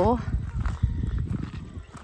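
Footsteps crunching on a gravel path, with a low rustle of movement, after a short spoken "oh" at the very start.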